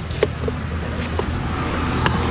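Steady low rumble of street traffic, with a few sharp clicks of a long knife cutting through watermelon rind, the strongest about a quarter second in.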